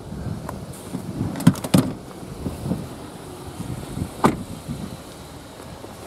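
Clicks and knocks from a car's seat and door being handled as someone climbs out of the back of the car. A quick cluster of sharp clicks comes about a second and a half in and is the loudest part, with one more sharp click about four seconds in.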